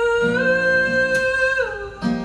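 A man singing one long held note with no words over a strummed acoustic guitar; the note steps up slightly about half a second in and slides down near the end as the guitar chord is struck again.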